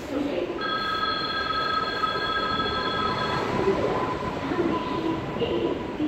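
Passenger train pulling slowly out of a station, its running noise steady, with a high-pitched squeal from the train, several tones at once, held for about three seconds from just after the start.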